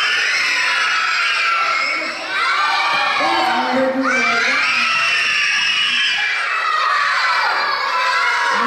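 A room full of children shouting out all at once, many high voices overlapping as they call out answers, with a brief lull about two seconds in.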